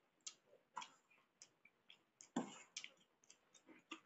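Metal spoon clicking and scraping against a stainless steel plate while scooping pasta: a string of short, sharp clicks, the loudest a little past halfway.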